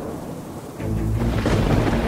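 A roll of thunder with falling rain, starting low and swelling from about a second in.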